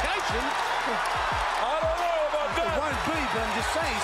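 Boxing fight broadcast sound: a steady arena crowd with a ringside commentator's raised voice, over a string of short, low, falling thuds that come thicker in the second half.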